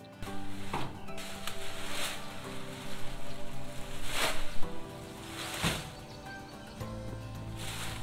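Background music over the rustle of armloads of cut leafy branches being thrown onto a motorcycle sidecar cart, with about four loud swishes a second or two apart.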